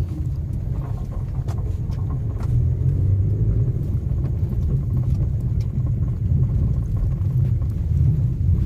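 Steady low rumble of a car driving along an unpaved dirt road, heard from inside the cabin, with a few faint clicks.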